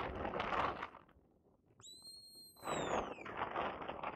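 A sheepdog handler's whistle command: one long held whistled note that falls away at its end, given about two seconds in. A loud rushing noise fills the first second and the last second or so.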